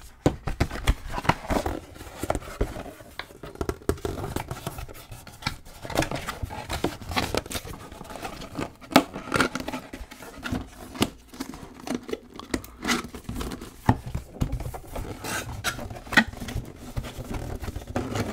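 Cardboard diorama wall panels being handled, folded and slotted together by hand: an irregular run of scrapes, taps and rustles.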